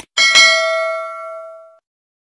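A short click, then a bright bell-like ding from a notification-bell sound effect, which rings on and fades away over about a second and a half.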